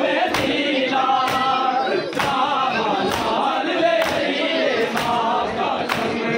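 A group of men chanting a noha, a Shia lament, in unison, over the sharp slaps of matam, hands striking bare chests roughly twice a second in a steady rhythm.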